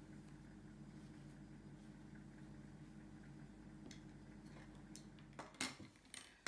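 Near silence: room tone with a faint steady low hum, and a few faint clicks near the end.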